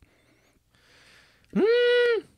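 A faint breath, then about one and a half seconds in a single drawn-out, high-pitched voiced call that swells up, holds one steady note and tails off.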